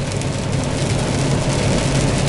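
Cab noise of a Kenworth T680 semi truck cruising at highway speed in the rain: a steady low engine drone under an even hiss of rain and wet road.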